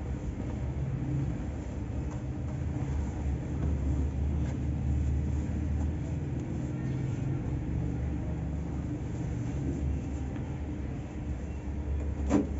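Hands stirring, scooping and rubbing loose dry cement powder in a metal basin, with faint light ticks from the powder, over a steady low rumble.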